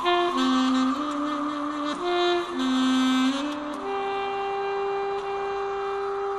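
A reed wind instrument playing a melody of short notes that step up and down, then one long held note from about four seconds in.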